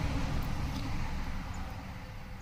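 Steady low background rumble with a faint hiss, easing a little toward the end.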